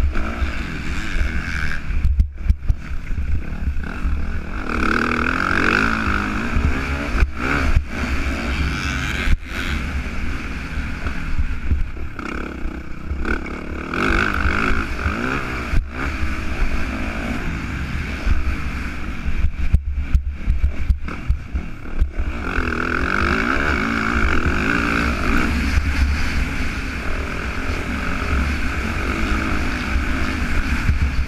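Yamaha motocross bike's engine under race throttle, heard from a camera mounted on the bike, its revs rising and falling again and again through the track's corners and jumps.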